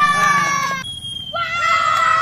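Children's high-pitched, drawn-out screams and yells, cheering on a climber. One long cry falls slightly in pitch and breaks off just before the one-second mark, and a second long cry starts about half a second later.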